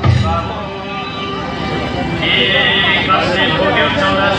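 A song with a heavy drum beat cuts off about half a second in, and voices take over, talking. A high-pitched voice stands out for about a second in the middle.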